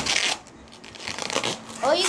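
Brief rustling and rubbing as a twisted latex balloon sculpture is handled: a short burst at the start and another just past a second in. A child's voice starts just before the end.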